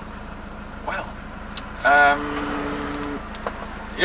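A man's drawn-out hesitant "umm" about two seconds in, held at one steady pitch for over a second, over a steady low background rumble.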